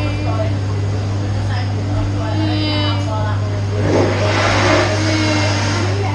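Indoor shop background: a steady low hum with faint voices in the background, and a short rush of noise about four seconds in.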